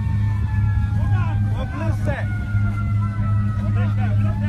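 Steady low drone of heavy engines, with thin high whining tones that slowly fall in pitch, under scattered voices of people.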